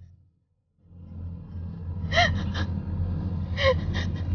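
A woman's short, high sobbing gasps, two of them, about two and three and a half seconds in, over a steady low rumble that starts after a brief silence about a second in.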